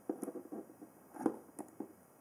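Light plastic clicks and taps from hands working the latch on the lid of a toy makeup carrying case.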